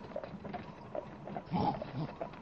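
A short, low, pitched grunt about a second and a half in, over faint scattered clicks.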